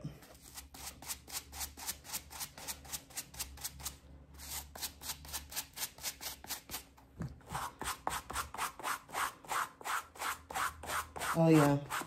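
A suede brush scrubbing a shoe in quick, even back-and-forth strokes, about five a second. The strokes break off briefly about four seconds in and grow louder in the second half.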